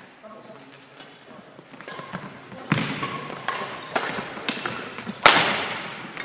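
Badminton rackets striking a shuttlecock in a quick rally, a series of sharp hits about half a second apart starting a little before halfway, the loudest near the end. The hits echo around a large sports hall.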